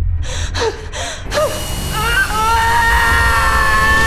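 A woman gasping sharply three times, then a long high-pitched scream held over the last two seconds, over a low steady drone.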